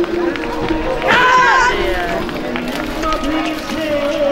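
People's voices throughout, with one loud shout about a second in that lasts about half a second.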